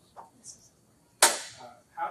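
A single sharp knock about a second and a quarter in, much louder than the room, with a brief ringing tail; a couple of faint clicks come before it.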